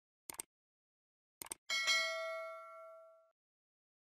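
Sound effect of a subscribe-button animation: mouse clicks, a pair about a third of a second in and another pair about a second and a half in, then a single bright bell ding that rings out and fades over about a second and a half.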